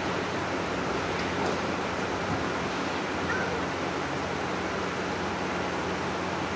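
Steady room noise in a large hall: an even rush with a faint low hum beneath it, and a few slight soft bumps as the rows of worshippers move in prayer.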